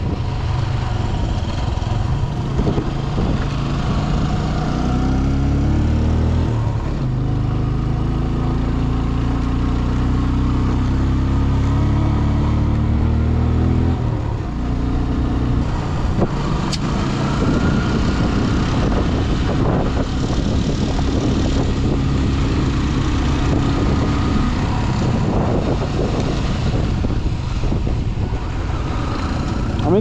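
Motorcycle engine running under way, heard from on the bike, its note rising and falling a few times with the throttle.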